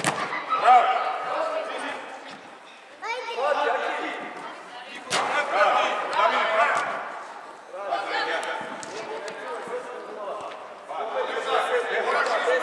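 Voices calling out across a large indoor hall during a futsal match, with two sharp kicks of the ball, one at the very start and one about five seconds in.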